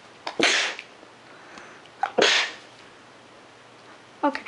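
A child sneezing twice, about two seconds apart, each a short sharp burst.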